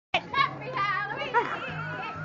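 Excited, high-pitched voices calling out and chattering over a steady low hum.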